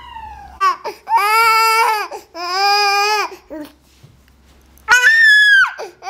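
Baby crying: three drawn-out wails, each about a second long, with short whimpers between them. The last wail is the highest and loudest.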